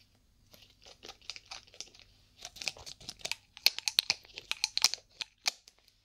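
Small brown glass dropper bottle being opened by hand: a rapid, irregular run of sharp crackles and clicks from the cap and its wrapping, growing denser and louder about halfway through.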